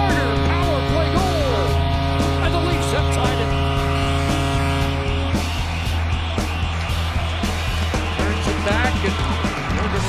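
Arena goal celebration after a goal: a sustained goal horn sounds for about the first five seconds over the cheering crowd and the arena's goal music, which carries on until the sound changes just before the end.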